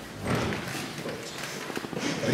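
A few light, irregular knocks and taps, with a brief low sound about a quarter second in.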